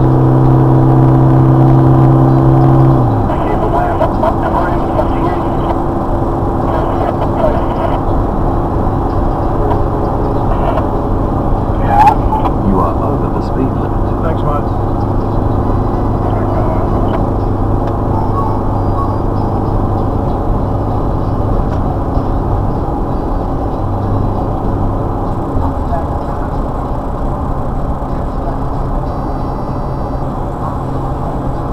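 Vehicle engine and tyre drone heard from inside the cabin at highway speed while overtaking a road train. The engine note is loud and high for the first three seconds, then drops to a lower, steadier hum as the vehicle eases off. A single sharp click comes about twelve seconds in.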